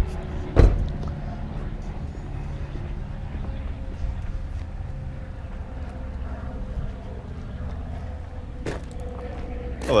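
A car door shuts with one loud thud about half a second in, followed by a steady low outdoor rumble.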